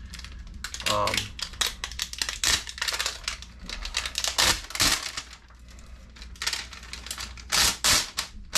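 Thin plastic keyboard membrane sheets crackling and rattling in the hands as they are handled and peeled apart: a quick run of small crisp crackles, with a few louder ones near the end.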